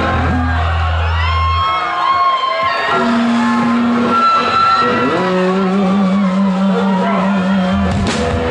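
Live rock band on stage with electric guitars holding sustained notes, one low note wavering, while shouts and whoops from the audience glide over them. The full band crashes in right at the end.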